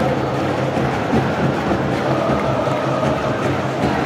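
Stadium crowd of football fans singing a chant together, a mass of voices holding long notes at a steady level.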